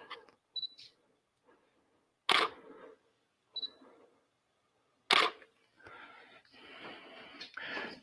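Canon DSLR shutter firing twice, about three seconds apart, each shot a moment after a short high beep.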